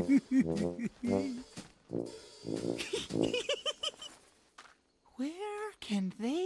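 Cartoon character voices laughing and giggling over background music, then near the end a drawn-out vocal call that rises and falls in pitch.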